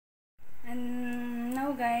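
Silence, then a woman's voice holding one long hummed note that rises in pitch near the end.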